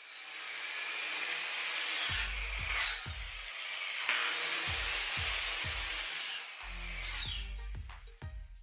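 Angle grinder with a sanding pad grinding the bevel on the end of a steel pipe, running in two long passes; its high whine drops in pitch at the end of each pass, and it fades near the end.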